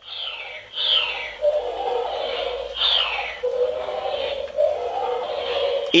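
Buzz Lightyear talking figure (Thinkway Toy Story Collection) playing its electronic flight-mode sound effect through its small speaker, set off by tilting the figure. It makes a wavering hum with falling swoops, the clearest about a second in and about three seconds in.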